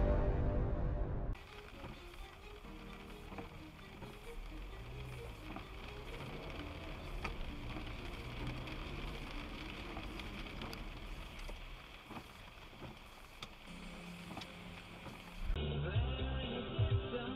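Music that cuts off suddenly about a second in. It is followed by faint in-car sound from a dashcam: a low rumble from the moving car with faint talk over it. Music comes back suddenly near the end.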